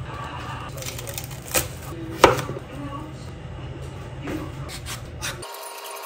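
Kitchen handling of produce: plastic bag rustling and a few sharp knocks on the counter, the loudest about two seconds in. Near the end the sound cuts to a hand peeler scraping the skin off a chayote.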